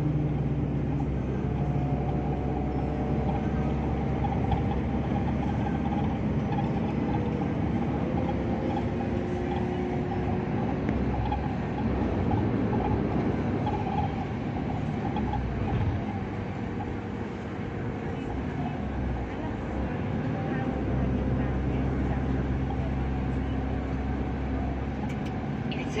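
Steady road and engine noise inside a car cruising on a highway: a continuous low tyre-and-engine drone that eases slightly for a few seconds in the middle.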